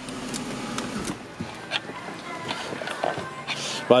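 Mercedes-Benz CLK 350 cabriolet's power soft-top mechanism running steadily as the roof finishes folding, cutting off about a second in. It is followed by quieter background with a few light clicks.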